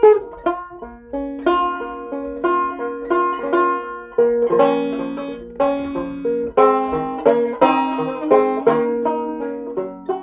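Solo five-string banjo, in G tuning capoed up to A flat with the fifth string spiked at the second fret, picking a slow folk melody. Each note is plucked and rings on, and lower notes are held under the tune.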